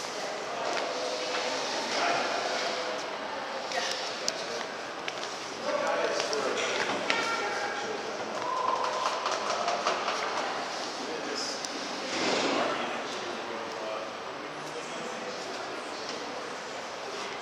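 Indistinct voices of people talking in the background, coming and going, with a few small knocks.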